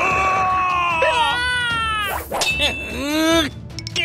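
Cartoon sound effects: a ringing, clang-like tone, then whiny, straining character-voice sounds whose pitch slides up and down, broken by a short whoosh about two seconds in.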